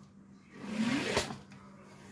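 A regular Pringles can sliding out of a giant Pringles tube: a scraping swell that builds over about a second and ends in a light knock.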